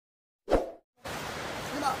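A single short pop sound effect about half a second in, dropping quickly in pitch, from the end of a subscribe-button animation. About a second in, a steady hiss of outdoor background starts, with a voice beginning near the end.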